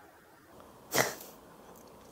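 A woman's single short laugh, breathed out sharply through the nose about a second in, against quiet room tone.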